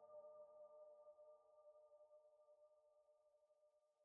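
Very faint background music of a few sustained, held tones, fading out to near silence about three seconds in.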